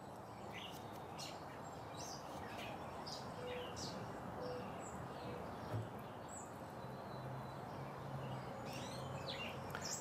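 Small birds chirping on and off, short high calls several times a second, over a steady outdoor background hiss.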